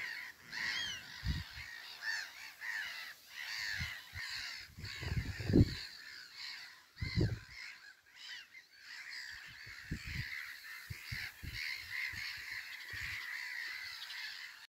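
Wild birds calling by a lake: a steady chatter of short, high chirping calls, which a listener may take for crow-like cawing, runs all through. Several low thumps are scattered among the calls.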